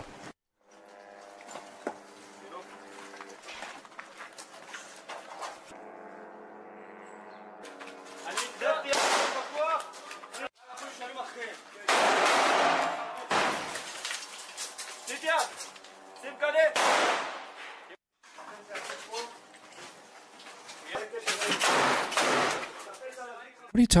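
Audio track of combat footage. Steady held tones come first. From about eight seconds in there are repeated loud bursts of small-arms gunfire, with men's voices between them.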